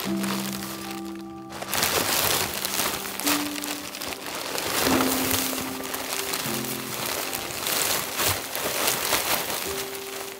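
Plastic wrapping crinkling and rustling as it is pulled off a bundle of lumber boards, under background music of held notes.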